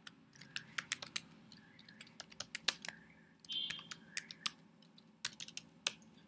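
Typing on a computer keyboard: irregular keystrokes in quick runs with short pauses as words are typed.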